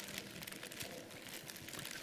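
A plastic bag crinkling faintly as it is handled, in a run of small irregular crackles.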